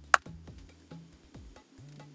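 One sharp hand clap just after the start, dead dry with no echo or ring-out because of the anechoic chamber's sound-absorbing walls. A soft background music bed plays under it.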